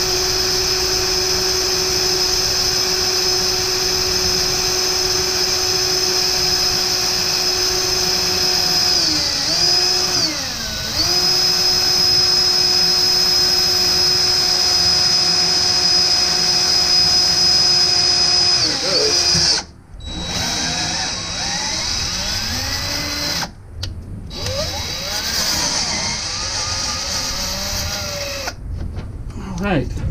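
Cordless drill driving a 1/4-20 combination drill-tap bit into the steel Jeep frame: a steady motor whine that sags and picks up again about ten seconds in, stops about two-thirds of the way through, then runs again in shorter spells of changing speed.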